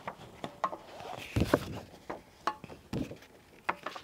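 Paper letter cards being handled and set against a whiteboard: a series of irregular light taps and knocks with paper rustling between them.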